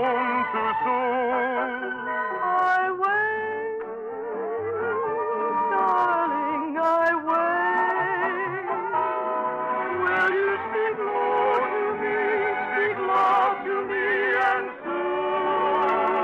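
Orchestral music from a radio musical's score, with sustained melody lines in a wide vibrato over the accompaniment.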